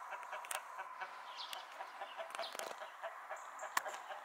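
Farmyard poultry calling, mostly short chicken clucks scattered through, with a sharp click near the end.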